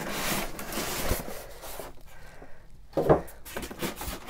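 Polystyrene foam packing scraping and rubbing as the foam top is pulled off a boxed sewing machine, with a short thump about three seconds in.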